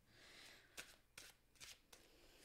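A deck of tarot cards shuffled by hand, faint: a soft rustle of sliding cards, then a few light snaps as cards drop together.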